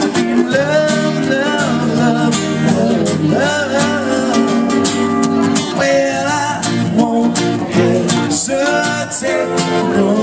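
Live acoustic duo: two acoustic guitars strummed together under a man singing into a microphone, amplified through a small PA.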